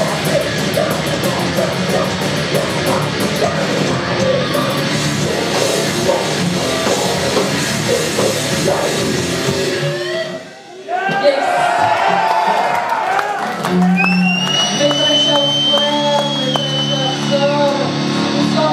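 Metal band playing live at full volume with guitars and drums, breaking off about ten seconds in. After a brief drop, held guitar notes ring out with a long high tone and a low drone underneath.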